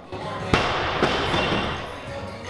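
A heavy thud about half a second in, followed by about a second of clattering that fades: a loaded barbell dropped onto the gym floor.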